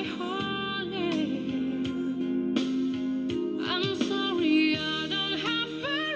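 A woman singing a slow ballad over soft accompaniment, holding long notes that bend in pitch.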